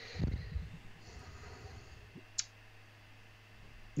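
Quiet pause over a steady low hum, with a brief low thump just after the start and a single sharp click about two and a half seconds in.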